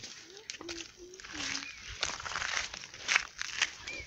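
Footsteps crunching on dry, stony dirt with rustling of dry twigs and leaves, in an irregular run of short crackles and scuffs. A few brief low hums of a voice sound in the first half.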